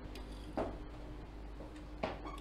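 Quiet room tone in a pause between spoken sentences: a steady low hum with a few faint soft clicks, the plainest about half a second in.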